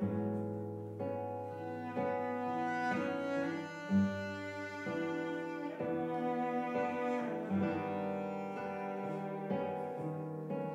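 Bowed cello and acoustic guitar playing an instrumental duet: the cello holds long bowed notes while the guitar plucks notes and chords beneath it, with a stronger accent about four seconds in.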